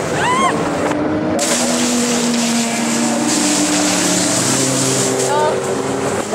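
Fast ride on a wooden toboggan: a steady rushing noise of wind on the microphone and sled runners on packed snow, with children's voices calling out over it, brief high shouts near the start and near the end and long drawn-out calls in between.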